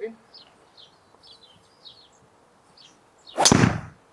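Golf driver swung hard and striking the ball: one loud rush of sound about half a second long, some three and a half seconds in, with the club's contact in it. The ball was caught a bit on the toe. Birds chirp faintly throughout.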